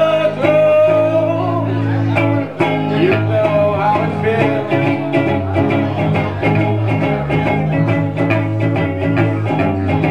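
Live acoustic guitar music with singing: guitar chords played steadily, with a sung melody that bends and wavers over the first few seconds.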